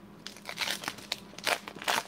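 Foil wrapper of a 1995-96 Fleer basketball card pack crinkling as it is handled and the cards are pulled out of it. The crackles are irregular and get louder toward the end.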